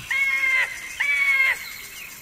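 Bird calls as a sound effect: two drawn-out calls of about half a second each, steady in pitch and spaced about a second apart.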